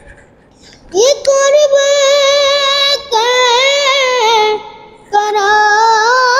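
A boy's high solo voice singing an Urdu naat with no instruments: long held notes with wavering ornaments, in three phrases separated by short breaths, the first starting about a second in after a pause.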